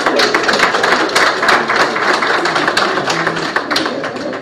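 A congregation applauding, a dense crackle of many hands clapping that fades out near the end.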